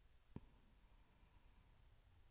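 Near silence, broken by one faint click about a third of a second in.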